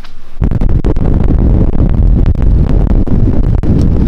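Loud wind rumble buffeting the microphone on a moving motor scooter, starting abruptly about half a second in.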